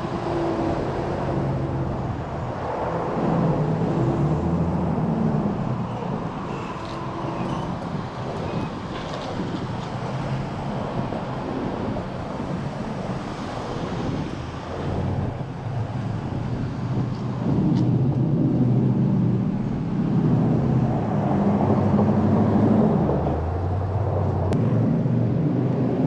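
Road traffic at a busy street intersection: engines and tyres of passing cars swell and fade, with a couple of louder stretches as vehicles go close by.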